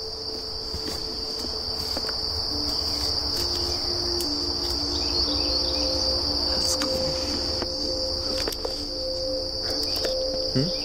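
A steady, high-pitched chorus of insects trilling without a break, over a low rumble of wind or handling noise.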